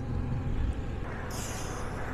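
Honda Transalp 650's V-twin engine running steadily while riding, heard as a low rumble under road and wind noise on the bike-mounted microphone. A hiss joins in a little past halfway.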